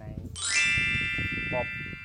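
A bright chime sound effect struck once about a third of a second in, many high tones ringing together and fading slowly.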